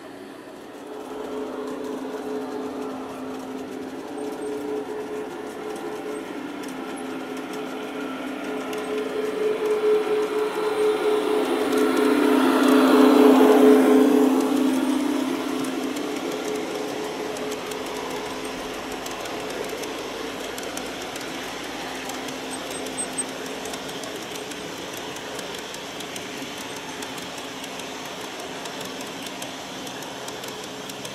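LGB G-scale model trains in Rhaetian Railway livery running on garden-railway track: a steady motor hum with the rush of wheels on rail. It grows louder as a train comes close, is loudest about 13 seconds in as it passes, then settles to a steady, quieter run.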